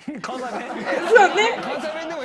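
Several voices talking over one another, with laughter mixed in.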